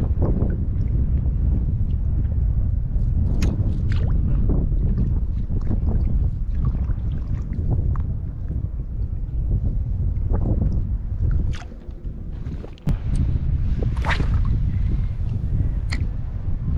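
Steady low rumble of wind on the microphone with water sloshing around a person wading in shallow sea water, broken by a few short sharp splashes, the strongest about fourteen seconds in. The rumble drops away briefly around twelve seconds.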